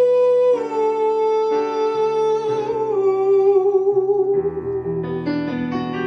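A man singing long, wordless held notes that step down in pitch two or three times, over chords on a digital piano. About four seconds in the voice fades out and the piano plays on alone.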